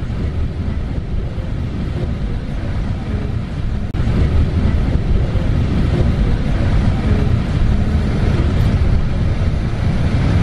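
Tour bus engine and road noise heard from inside the moving bus: a steady low rumble.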